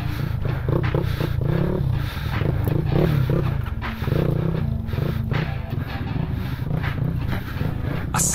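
Dirt bike engine running at low speed on a rough trail, its revs rising and falling about once a second with repeated short throttle blips.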